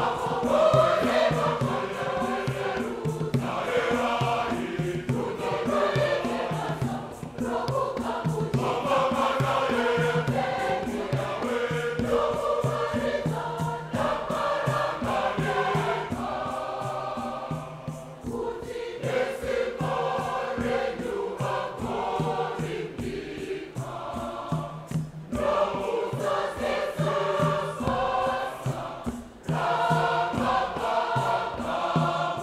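A large mixed choir of men and women singing a Shona hymn in parts, in phrases with short breaths between them, over a steady low beat.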